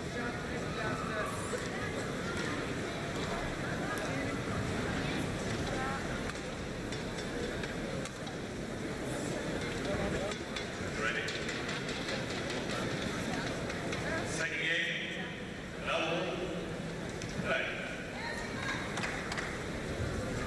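Indoor arena crowd murmuring steadily between points, with a few louder voices calling out near the end.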